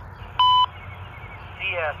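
A single short electronic beep, one steady tone about a quarter of a second long. Near the end the synthesized voice of a railroad defect detector begins over a scanner radio.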